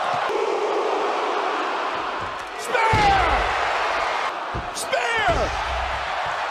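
Wrestling arena crowd noise with a heavy body impact about halfway through and two more thuds near the end. Each impact is met by shouts that fall in pitch.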